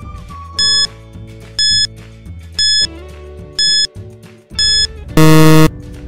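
Quiz countdown timer sound effect: five short, high beeps about a second apart, then a louder, lower buzzer about five seconds in that signals time is up, over light background music.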